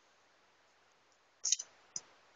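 Faint steady hiss, then a quick cluster of sharp clicks about one and a half seconds in and another single click near the end.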